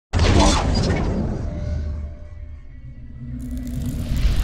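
Sound-design hit of a logo intro: a sudden heavy crash with a shattering edge that dies away over about two seconds, then a rising whoosh near the end.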